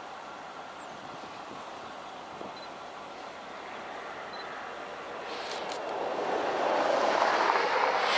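Diesel locomotive leading a freight train approaching, its engine and wheel noise growing steadily louder over the last three seconds.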